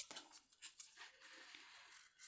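Near silence: faint room tone with a few soft clicks in the first second.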